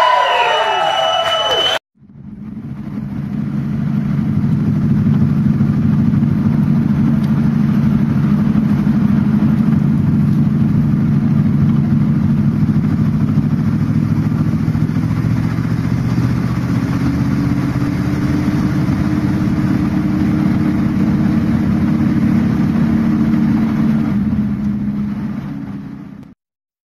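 Live band's closing notes with crowd cheering, cut off sharply about two seconds in. Then a vintage car's engine running steadily as it drives, fading in, rising a little in pitch past the middle, and fading out near the end.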